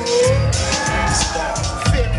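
Hip hop beat played loud over a club PA: heavy bass and hi-hats under a held, slowly wavering melodic line.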